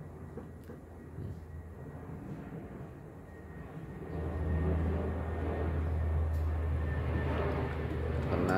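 Low, steady rumbling noise that grows louder about halfway through and holds.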